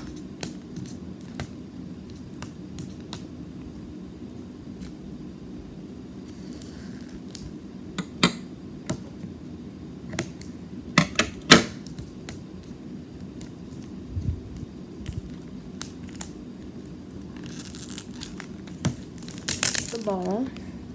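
Thin plastic wrapping being cut and picked off a hard plastic capsule ball: scattered sharp clicks and snips, with a longer crinkling near the end.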